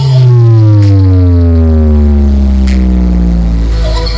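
Loud bass-heavy music from a large sound system stack: one long, deep bass note slides slowly down in pitch for about three and a half seconds, and the music picks up again near the end.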